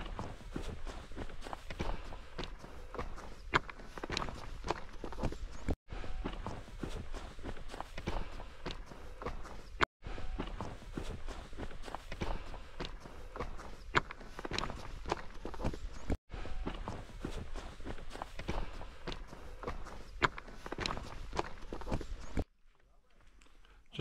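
Hiker's footsteps walking steadily up a mountain trail, with a few brief gaps in the sound and falling almost silent near the end.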